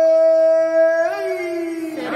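Conch shell (shankha) blown as one long held note, rising slightly in pitch about a second in and then sliding back down as it fades a little.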